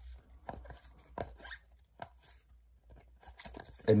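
Trading cards being handled in a hand-held stack: a scattering of short clicks and rustles as cards are slid and flicked against each other, with a brief lull near the end.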